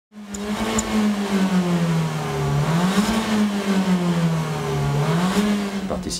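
Car engine running hard, its pitch sinking slowly and then climbing again three times, as the revs drop and pick up.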